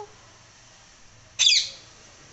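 Rose-ringed parakeet giving one short, loud, shrill squawk about one and a half seconds in, falling in pitch.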